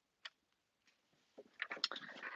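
Mostly quiet, with one faint click about a quarter second in and a few light clicks and taps near the end as the clear plastic cutting plates of a die-cutting machine are handled and lifted.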